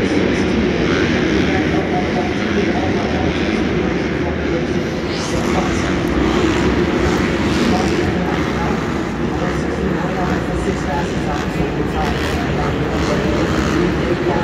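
Supercross dirt bikes running laps of the track inside an enclosed stadium, several engines blending into a loud, steady drone, with voices from the crowd over it.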